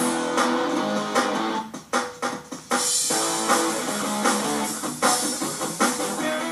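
Music with guitar playing, over steady percussion hits.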